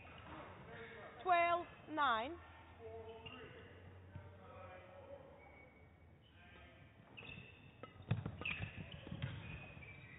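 Two short, loud player shouts, about a second and two seconds in, the second falling in pitch. Later a badminton rally: sharp racket hits on the shuttlecock and shoe squeaks on the court floor, from about eight seconds in.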